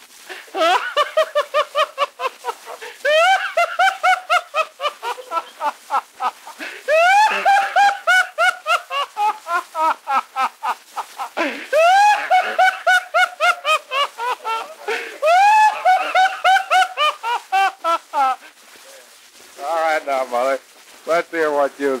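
A person laughing hard on a 1942 home-recorded acetate disc, high-pitched giggling in four long bouts of rapid 'ha-ha' pulses. The recording is thin, with no bass, and a lower voice comes in near the end.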